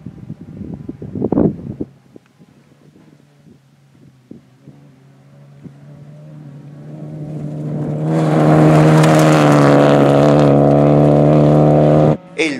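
Kia rally car's engine approaching on a gravel stage, growing louder from about halfway and running loud at high, steady revs as it comes close near the end.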